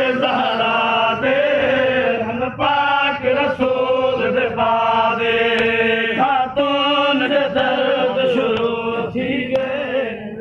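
Chanted singing in long held notes, moving from one sustained pitch to the next with short breaks about every second.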